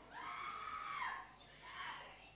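A person's faint, high-pitched wailing cry, drawn out for about a second and dropping in pitch as it ends, followed by a shorter cry near the end.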